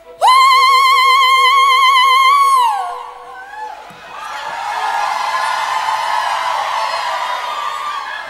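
A woman's long howl into a microphone: one high, wavering held note that swoops up at the start and falls away after about two and a half seconds. About four seconds in, the audience howls back together, a mass of many voices that holds to the end.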